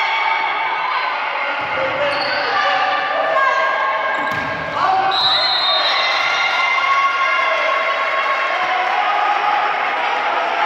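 Volleyball rally in an echoing sports hall: many voices calling and shouting over one another, with a couple of dull thuds of the ball being struck.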